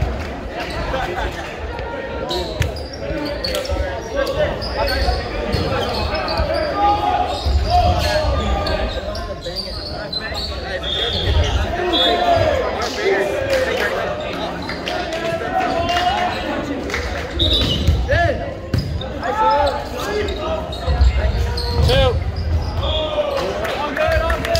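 Indoor volleyball play: the ball being struck and thudding on the hardwood court, a string of sharp knocks, under players' and spectators' voices, all echoing in a large gymnasium.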